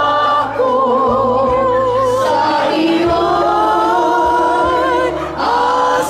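A group of women singing a slow song together, one voice leading into a handheld microphone, with long held notes and a clear vibrato.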